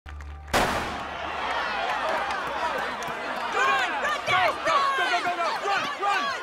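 Stadium crowd cheering and yelling at a school track race, many voices shouting over one another. The crowd comes in suddenly, loud, about half a second in after a low hum, and swells into rising and falling shouts in the second half.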